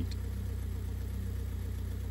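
Caterham Seven's 2-litre Ford Duratec four-cylinder engine idling steadily.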